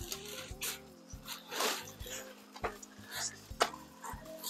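Plastic garbage bag crinkling and rustling in short bursts as it is folded and turned inside out around a skillet, over faint background music.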